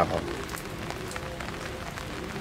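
Light rain falling on garden foliage and soil: a steady soft hiss with a few scattered drop ticks.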